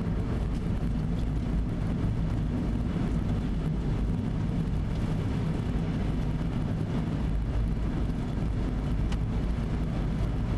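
Steady cabin road noise of a car cruising at highway speed on wet pavement: a low, even rumble of engine and tyres with a faint hiss above it.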